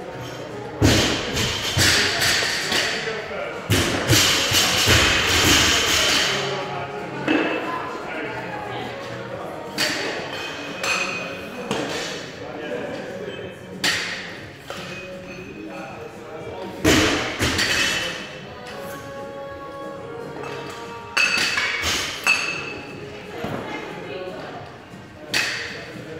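Loaded barbell with bumper plates thudding down onto a rubber gym floor several times, a few seconds apart, over gym music and voices.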